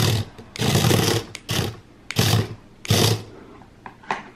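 HexBug Fire Ant robot toy's small electric motor and gear-driven legs whirring as it scuttles across a table, in about five short stop-start bursts. Really loud for its size.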